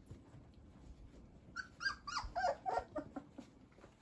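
Young standard poodle puppies whimpering and squealing: a quick run of about seven high cries that slide down in pitch, starting about one and a half seconds in and lasting under two seconds. The puppies are jostling under their standing mother to nurse.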